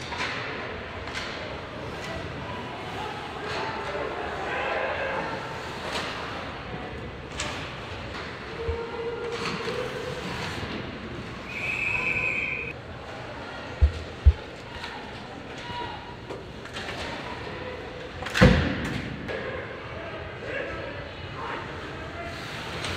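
Live ice hockey game sound in an arena: sticks and puck clacking, blades scraping and players' voices over the crowd's din. A referee's whistle blows for about a second just before the middle, and about three quarters of the way through a loud bang, like a body or the puck hitting the boards, is the loudest sound.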